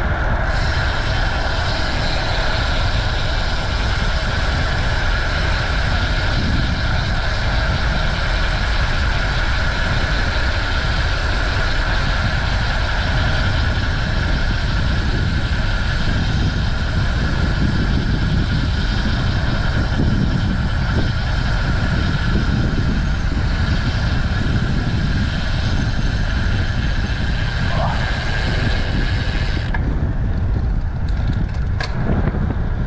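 Steady rush of wind on the microphone and tyre noise from a road bicycle riding along a city street.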